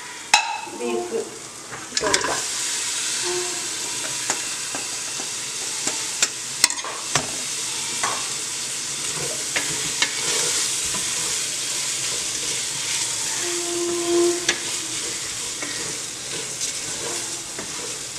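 Beef masala with onions and green chillies sizzling in an aluminium pressure-cooker pot while it is stirred with a wooden spatula. The sizzle steps up about two seconds in, and the spatula knocks against the metal side now and then.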